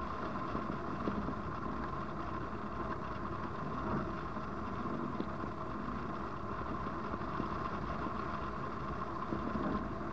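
Steady rush of airflow over a hang glider-mounted camera's microphone in unpowered soaring flight, an even rumble and hiss with no engine.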